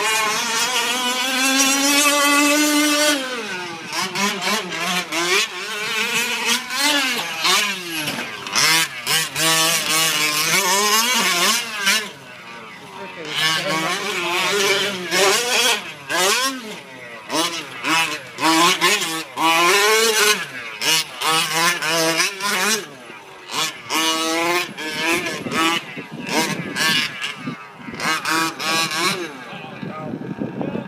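The small two-stroke gas engine of a 1/5-scale RC short course truck, revving up and down as it races around a dirt track. It holds a high rev for about the first three seconds, drops, then rises and falls over and over with the throttle.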